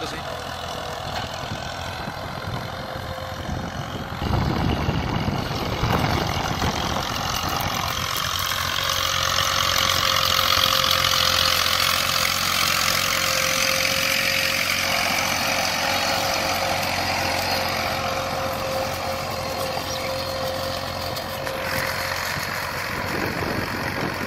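Massey Ferguson 240 tractor's diesel engine running steadily as it pulls a disc harrow through dry ploughed soil: a constant drone with a steady whine. The sound's tone and level shift abruptly a few times.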